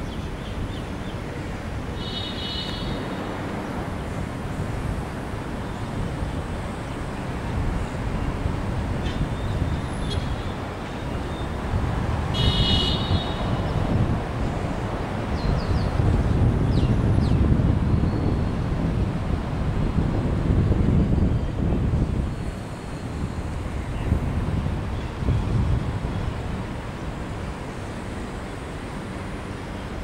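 Outdoor street noise: road traffic with a steady low rumble that swells louder for several seconds about halfway through. Two short high-pitched tones cut in, about two and twelve seconds in.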